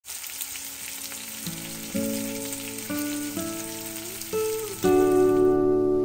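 Chicken skewers sizzling on a grill pan. Plucked guitar music comes in about a second and a half in and grows louder, and the sizzling stops just before the end.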